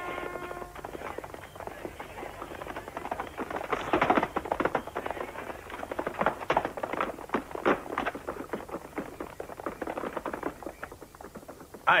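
Hurried, irregular footsteps and knocks on wooden boards and shingles, busiest in the middle, ending in a short sharp cry of "Aj!"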